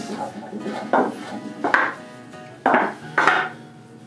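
Four short metallic clinks and rattles about a second apart, from the steel cable hardware of a tensegrity coffee table and the tools lying on its wooden top as the table is pushed and handled.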